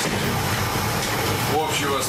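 Indistinct voices over a steady low hum, with a short snatch of speech near the end.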